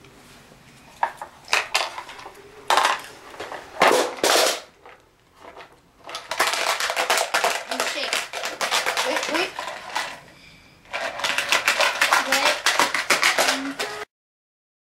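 Small beads clattering inside a small cardboard box: a few separate clicks and knocks as they are dropped in, then two long spells of rapid rattling as the box is shaken, with a short pause between them.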